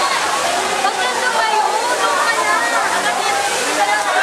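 Artificial pool waterfall pouring steadily beside a rock cave, with many overlapping voices and children's shouts from the crowded pool over the rush of water.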